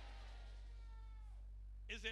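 A man's voice trails off in a faint, long falling tone over the microphone and fades out about a second and a half in, over a steady low electrical hum.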